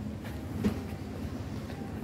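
Steady low background hum of a supermarket, with a faint knock about two-thirds of a second in.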